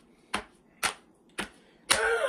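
Four sharp clicks, evenly spaced at about two a second, with near silence between them.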